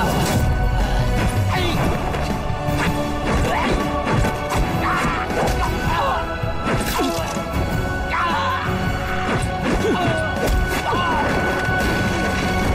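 Dramatic fight-scene music with a series of sharp punch and kick impact effects from a kung fu bout, hits landing several times through the passage.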